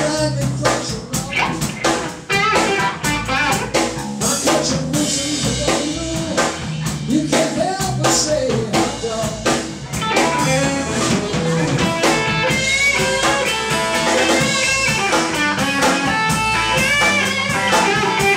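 Blues-rock trio playing live: a Telecaster-style electric guitar plays an instrumental lead with bent notes over bass guitar and a drum kit. The guitar lines grow busier and a little louder about halfway through.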